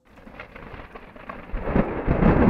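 Thunder sound effect: it starts faint and swells into a deep rumble about one and a half seconds in.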